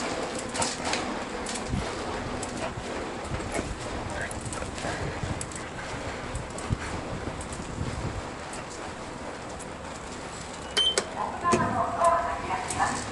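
Manual wheelchair rolling over a paved platform, with small clicks and rattles throughout. Near the end a short high beep, then a louder pitched sound like an elevator's chime or recorded voice.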